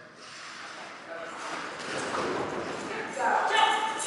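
Indistinct talking in a large, echoing hall, growing clearer near the end.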